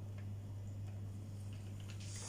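Low steady electrical hum under quiet room tone, with a few faint, scattered clicks.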